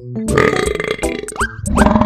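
A rattly burp sound about a second long over bouncy background music, followed by two quick rising whistle-like glides.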